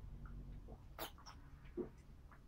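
A person drinking water from a bottle: faint swallowing gulps, one about a second in and another near the end, over a low room hum.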